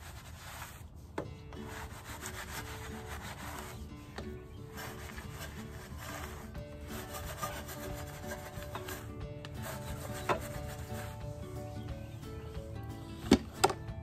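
Soft wheel brush scrubbing inside the barrel of a foam-covered truck wheel, a continued back-and-forth rubbing with short breaks. A few sharp knocks come near the end.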